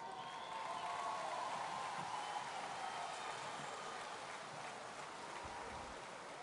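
Audience applauding, faint and steady.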